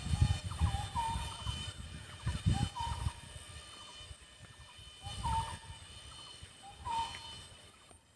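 A bird calling outdoors: a short whistled note that rises and then holds, repeated several times at uneven gaps, with scattered low rumbles underneath.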